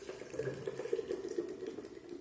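Blended passion fruit juice pouring from a steel mixer jar into a steel strainer, a continuous splashing trickle of liquid that thins out near the end.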